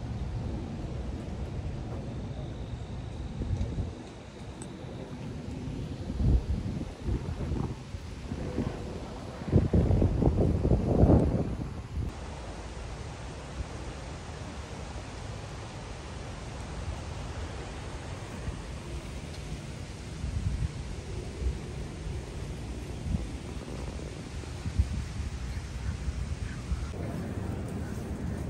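Wind buffeting a phone microphone outdoors: a steady low rumble with stronger gusts about six seconds in and again around ten to eleven seconds.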